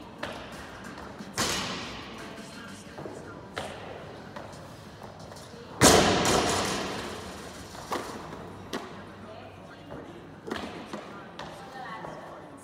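Thuds of gym weights dropped on a rubber floor, echoing in a large hall. There are several scattered knocks, and a heavy one about six seconds in rings on for about two seconds.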